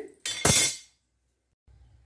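An aluminium kadai clanking down onto a gas stove: one sharp metallic clank that dies away within about half a second.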